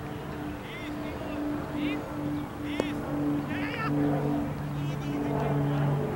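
Open-air ambience on a playing field: distant voices and a low steady droning hum that comes and goes, with a few short high chirps in the first half. A single sharp click sounds just before the middle.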